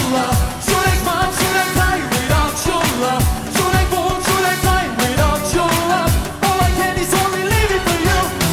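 Up-tempo pop song sung live by a male lead singer over a steady dance beat, with about two kick-drum hits a second.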